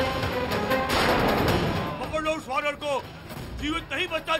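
Dramatic background music with sharp percussive hits, followed from about halfway through by a series of short voice-like calls that rise and fall in pitch.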